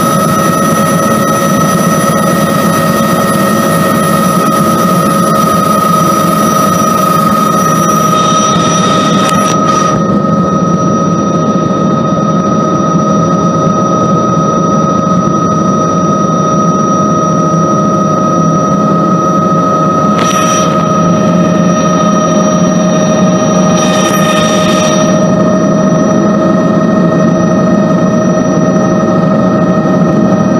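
Bell 206 JetRanger helicopter running, heard from inside the cabin: a steady turbine whine of several constant tones over a loud rotor and gearbox rumble. A high hiss drops away about eight seconds in, and two brief bursts of hiss come later.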